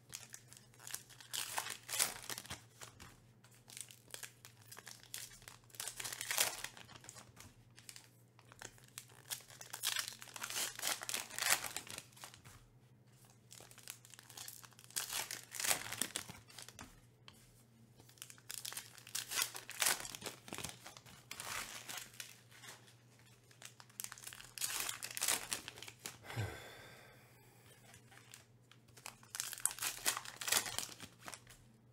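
Foil-lined baseball card pack wrappers being crinkled and torn open by hand, in repeated bursts of rustling every few seconds.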